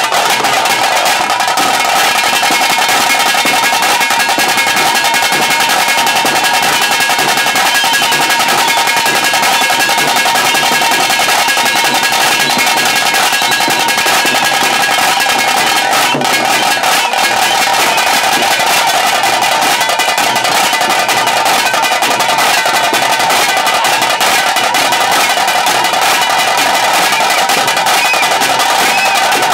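Tiger-dance drum band, tase drums beaten with sticks, playing a fast, dense, unbroken rhythm for the dancers.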